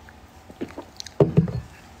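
A drinking glass set down on a hard surface: a light clink about halfway through, then a quick cluster of dull, low knocks.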